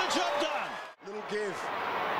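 Stadium crowd cheering a goal, with voices in the noise; the sound drops out suddenly just before a second in at an edit, then crowd noise and voices carry on.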